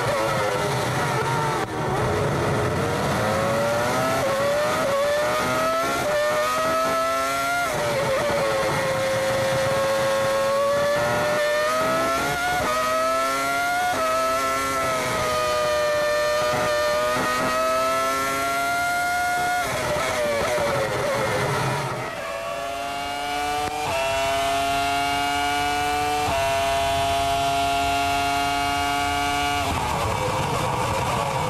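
Onboard sound of a 2004 Jordan Formula 1 car's Ford Cosworth V10 at racing speed, its pitch climbing through the gears on the straights and dropping away under braking for corners. About 22 seconds in it cuts to a Ferrari V10 onboard, rising in steps through upshifts.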